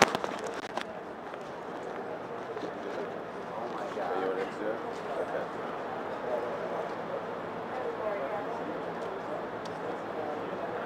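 Indistinct voices of people talking quietly nearby, with no clear words. A few handling clicks come near the start.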